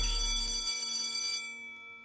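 The final held chord of a TV show's closing jingle, several steady tones sounding together and fading out; most of them stop about a second and a half in, leaving a few faint tones ringing.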